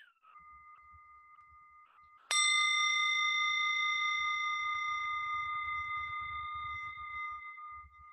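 A metal meditation bell struck once, about two seconds in, ringing with several clear overtones that fade slowly over the next five seconds; the fainter ring of an earlier strike hangs on before it. The bell marks the opening of a meditation sitting.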